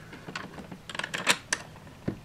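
A few light, sharp clicks at irregular intervals, the loudest two about a second and a half in.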